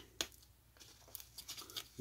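Faint handling noise from a small cardboard pack of little cigars: a sharp tap just after the start, then a few light clicks and rustles in the second half.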